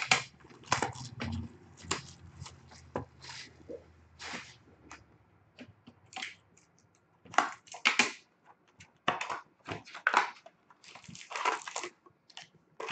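Hands handling and opening a cardboard trading-card box on a glass tabletop: irregular bursts of rustling, scraping and crinkling, with a lull in the middle and busier handling near the end.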